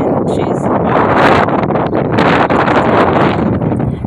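Wind blowing across a phone's microphone: a loud rushing noise that swells and eases in gusts.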